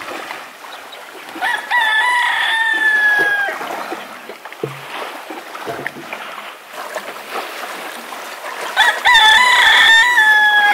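A rooster crowing twice: one crow about a second and a half in and another near the end, each a few short rising notes and then a long held note that drops off at the end.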